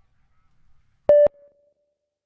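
A single short electronic beep about a second in: one steady mid-pitched tone lasting about a fifth of a second, switched on and off abruptly, then a faint trailing tone.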